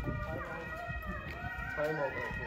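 Indistinct voices of people talking in a street, with faint steady tones underneath.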